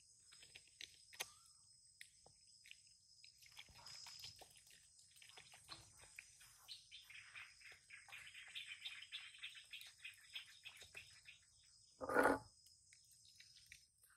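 Faint, steady high-pitched drone of insects such as crickets, with a stretch of rapid chirping in the middle. A short, louder sound comes about twelve seconds in.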